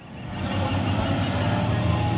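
Low rumble of a large vehicle's engine, swelling over the first half second and then holding steady, under faint background chatter.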